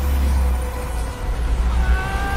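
Film sound effects of a magical energy blast: a loud, deep, steady rumble with a hissing wash above it.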